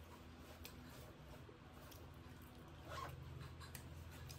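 Faint eating sounds: soft mouth clicks and chewing, and fingers mixing watery soaked rice (poita bhat) in a steel plate, with a slightly louder soft rustle about three seconds in. A low steady hum runs underneath.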